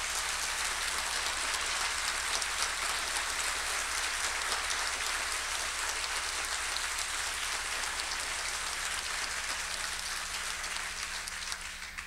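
Audience applauding steadily, the clapping dying away near the end.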